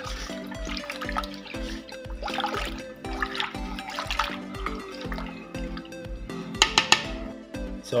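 Background music with a steady beat over a spoon stirring a thin liquid batter in a stainless steel pot, the liquid sloshing. A few sharp clinks come near the end.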